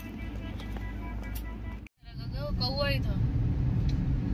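Steady low road and engine rumble inside a moving car's cabin, starting after a sudden cut about two seconds in, with a short stretch of a voice over it. Before the cut, quieter open-air background.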